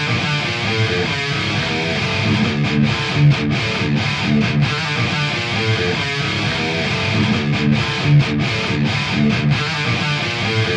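Distorted electric guitar playing a heavy metal riff, repeated low notes broken by brief stops.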